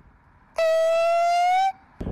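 A single siren-like tone, held for just over a second and rising slightly in pitch, starting and stopping abruptly.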